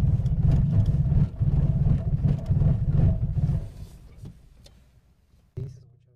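Car engine running rough at idle in reverse with the brake held, then dying away about four seconds in as it stalls: the fault of the engine cutting out when reverse is engaged. A brief thump follows near the end.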